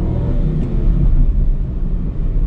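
Hyundai HB20's 1.0 naturally aspirated three-cylinder engine pulling in second gear, heard from inside the cabin as a steady low drone with road rumble underneath. There are no rattles or knocks from the body or suspension: the car is well put together.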